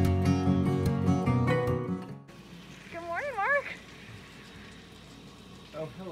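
Acoustic guitar music that cuts off about two seconds in. It is followed by the faint hiss of an outdoor shower running, with a short wavering vocal cry from a man under the water, and another one near the end.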